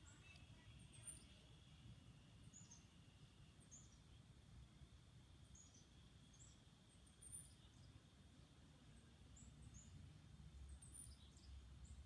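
Near silence with faint birdsong: short, high chirps about once a second from a small bird, over a faint low rumble.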